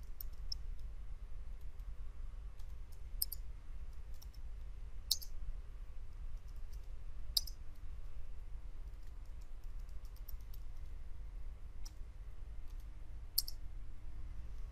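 Computer keyboard keystrokes and mouse clicks, scattered and irregular, with a few sharper clicks several seconds apart, over a steady low hum.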